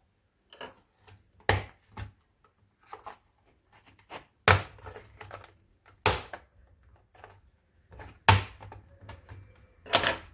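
Plastic bottom cover of an HP OMEN laptop being pried off with a pry tool, its clips snapping free in a string of sharp clicks. The four loudest snaps come about a second and a half in, halfway through, a little after that, and near the end.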